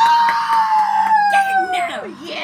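A person's loud, long, high-pitched squeal that jumps up sharply and then slides slowly down in pitch over about two seconds, with a few clicks of the phone being handled.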